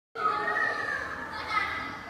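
Children's voices, high-pitched chatter and calling, starting abruptly just after the start.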